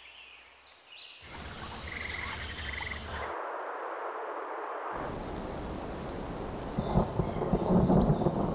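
Nature ambience in place of the music: a noisy outdoor bed of thunder and rain that changes abruptly every second or two, with low rumbles of thunder growing near the end.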